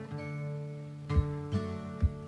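Acoustic guitar music: picked notes ringing over low bass notes, with a few sharper plucked notes in the second half.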